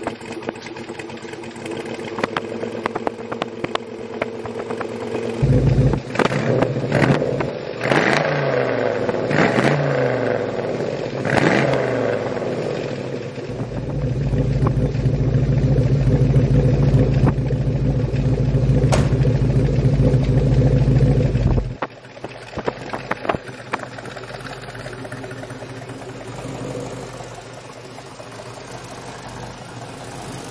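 Swapped 6.0 L LS V8 in a 1988 Monte Carlo running on a cold start through its exhaust. It idles for about five seconds and is then revved several times. It is held louder and steady for about eight seconds, then drops back to a quieter idle.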